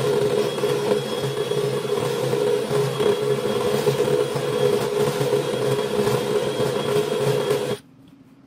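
DeWalt cordless drill running steadily under load, its bit cutting a hole through the steel top of a heavy-duty electrical enclosure. It stops suddenly just before the end.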